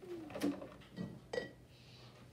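A child's soft, low murmur near the start, followed by a few light taps about a second apart, against quiet classroom room tone.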